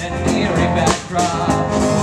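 Live rock band playing: electric guitar, bass guitar and drum kit, with regular drum and cymbal hits under sustained guitar notes.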